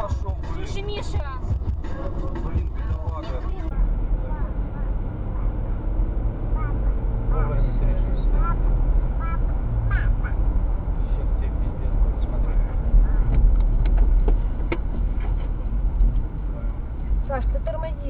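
Steady low road and engine rumble heard inside a car cabin on a highway, with scattered short voice fragments over it. For the first few seconds voices are plainly heard, and these stop abruptly at a cut to the quieter rumble.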